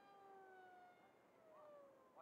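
Faint, distant whine of a small electric RC plane's brushless motor (G-Force LG2835 2400kv) spinning a 6x4 propeller. It is a thin steady tone that drops in pitch in the second half.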